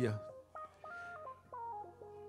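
Keyboard playing soft sustained organ-style chords, the notes moving in steps every few tenths of a second. A man's voice trails off at the very start.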